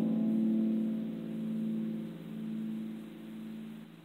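The final chord of a ten-string guitar ringing out and slowly dying away, its sustained notes swelling and fading in a slow pulse as they decay.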